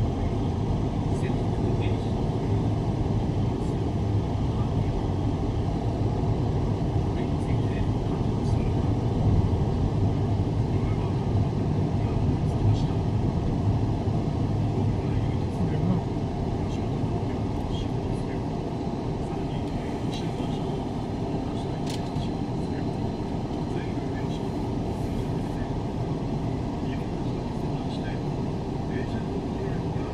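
Steady engine and road noise heard inside a car's cabin while it drives along an expressway, growing somewhat quieter about halfway through as the car slows in heavy traffic.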